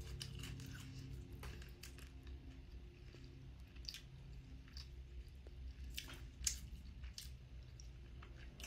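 Faint chewing and mouth sounds of someone eating, with a few sharp clicks scattered through, over quiet steady background music.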